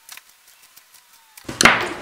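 A few faint ticks as a steel awl is pushed through folded leather, then a man clears his throat loudly near the end.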